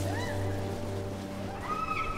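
A cat meowing twice, short calls that rise and fall in pitch, over a film score with a steady low drone.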